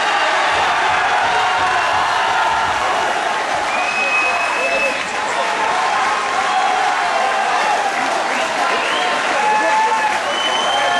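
Crowd of fight spectators shouting, cheering and applauding in a loud, steady din, reacting to a technical-knockout stoppage of the bout.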